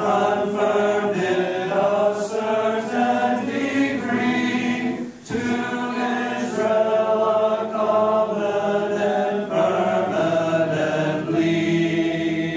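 A congregation of mostly men's voices singing a metrical psalm unaccompanied, the notes held and changing every half second or so. There is a short break for breath about five seconds in.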